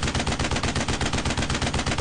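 Rapid automatic gunfire like a machine gun, a loud steady burst of about ten shots a second.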